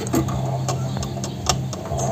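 White-eared brown doves shifting about on the wooden perches of their cage, making a few sharp irregular taps and clicks over a steady low hum.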